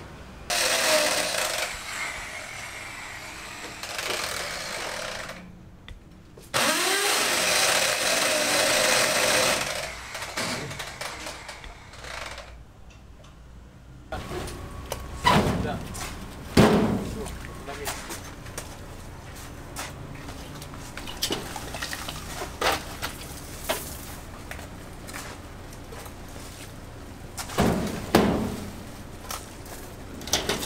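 Building-site work sounds: a loud, harsh noise in two stretches of several seconds each, then scattered knocks and clatters of rubble being handled and moved.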